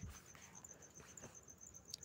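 Near silence: faint room tone between spoken lines.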